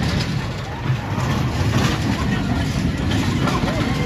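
Spinning roller coaster cars rolling along a steel track with a steady low rumble, over the voices of people nearby.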